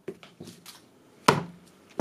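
Plastic neckband Bluetooth headset being handled and set down on a table: a few faint clicks, then one sharp knock a little over a second in.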